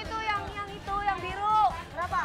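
Voices talking: quick speech from people in conversation.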